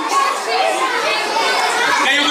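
Many children's voices at once, shouting and talking over each other in a crowd.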